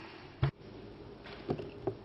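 Light handling noise at a lectern's microphones: a sharp click about half a second in, then two soft knocks, over a low steady room hum.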